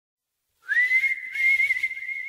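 A single whistled note opening a pop song: it comes in about half a second in, slides up, then holds one high pitch with a slight waver.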